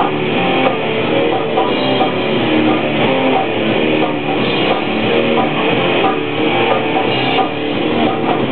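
A live punk rock band playing loud, steady electric guitar riffs over the band.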